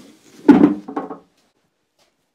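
Thick pine slab being handled and set down on the barn floor: one loud wooden thud about half a second in, followed by a couple of lighter knocks.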